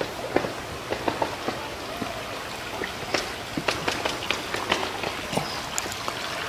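Irregular sharp taps and knocks, a few each second, over a steady background hiss.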